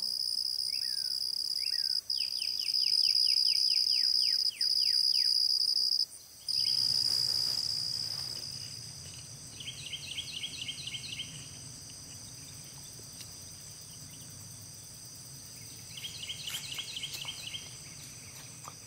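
Dawn chorus in woodland: a steady, high insect drone with birds calling over it. A bird sings a run of falling whistled notes, about four a second, in the first few seconds. After a break the sound grows quieter, with a low hum and short bursts of rapid chirping.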